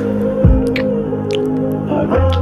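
Gentle background music with steady held notes, over which a few short wet clicks sound, about four in two seconds.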